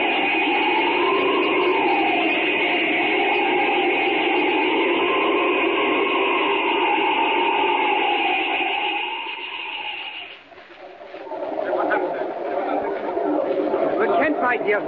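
Radio sound effect of rushing wind with a whistle that slowly rises and falls, marking Superman's flight. It fades out about ten seconds in, and the murmur of a crowd comes up in its place.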